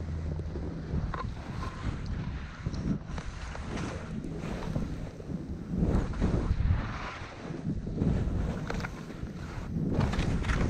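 Skis hissing through snow in a run of turns, each turn a swell of noise, with wind rumbling on the camera microphone throughout.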